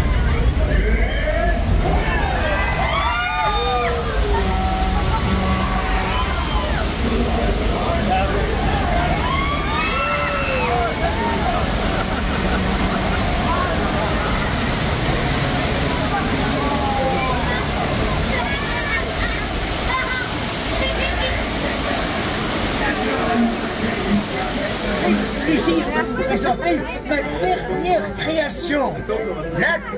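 Theme-park ride flash-flood effect: a heavy, steady rush of water pouring and splashing against an open-sided tram, with riders' exclamations over it. A low rumble underlies the first few seconds.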